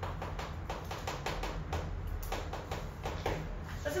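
Felt-tip marker writing on a classroom board: a quick, irregular run of taps and short scratches as the strokes are drawn, over a steady low hum.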